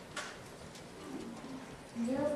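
A pause in speech over a microphone: a brief hiss near the start, then a faint low hummed murmur from a voice about a second in.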